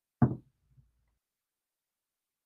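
A single short knock about a quarter of a second in, fading quickly, with a faint tap just after.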